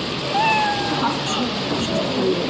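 Background chatter of several voices in a noisy room, with one high, slightly falling drawn-out vocal call about half a second in.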